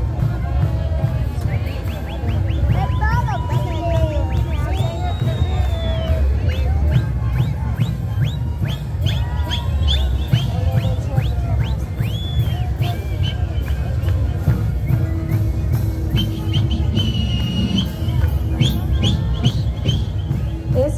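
A kantus band playing: large wankara drums beating steadily under a continuous melody of many siku panpipes.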